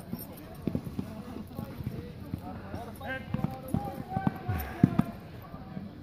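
Foam-padded LARP weapons striking shields and bodies in a mock melee: a scattering of irregular knocks, the loudest about five seconds in, under distant shouting voices.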